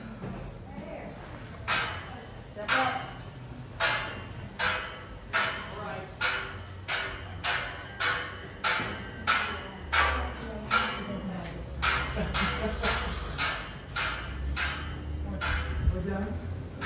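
Footsteps climbing a stairway, an even tread of about one and a half steps a second, each step a sharp knock with a short ring. The steps begin about two seconds in.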